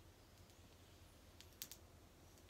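Near silence: room tone, with a few faint short clicks about one and a half seconds in.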